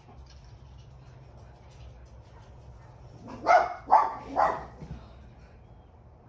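A dog barks three times in quick succession, a little past halfway through, over a faint low hum.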